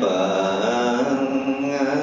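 A Buddhist monk chanting an invocation in slow, long-held notes that glide gently in pitch.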